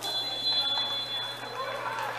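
Referee's whistle: one long, steady, high-pitched blast of nearly two seconds, signalling the penalty kick to be taken, over faint crowd voices.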